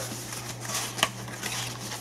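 Cardboard packaging being handled and opened by hand: a small black cardboard box rustling and sliding, with one short click about a second in.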